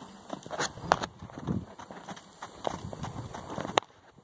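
Hooves of colts trotting on a dirt paddock: irregular soft footfalls, with two sharp clicks, about a second in and near the end.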